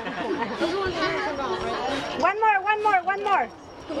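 Several people talking at once, party guests chattering, with one voice coming through clearer for about a second past the middle.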